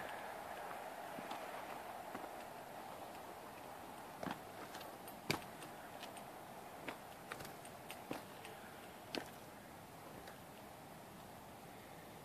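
Footsteps on burnt debris: a handful of irregular light crunches and knocks, the sharpest about five seconds in, over a faint steady hiss.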